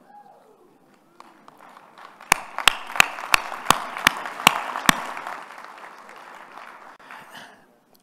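Audience applause rising about a second in and fading out near the end, with about eight sharp, loud hand claps close to the podium microphone, about three a second, in the middle of it.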